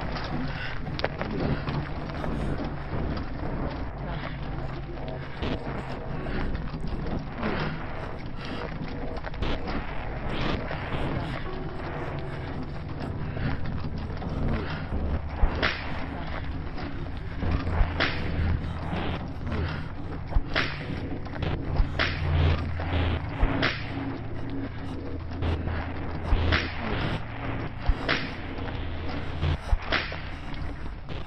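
Film soundtrack: a low sustained drone runs throughout. In the second half it is joined by sharp cracks that strike every couple of seconds.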